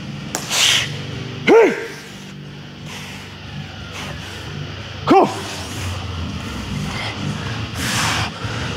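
A man's short, loud shouts, two of them, about a second and a half in and again about five seconds in, psyching himself up before a maximal deadlift. Sharp, forceful breaths come about half a second in and near the end as he sets up over the bar.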